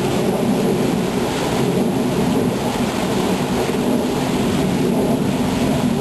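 Small waterfall pouring over rock into a river pool: a loud, steady rushing of water.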